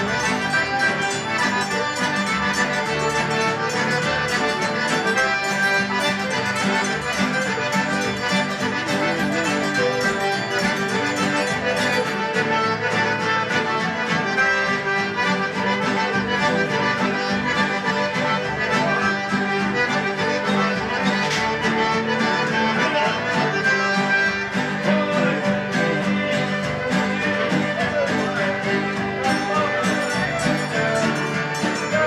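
A Cajun band playing live, led by a button accordion with fiddle and guitar, in one continuous stretch of dance music.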